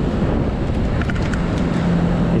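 Wind rumbling on the microphone. A steady low hum comes in about halfway through, and there are a few faint clicks from wiring being handled at a circuit board.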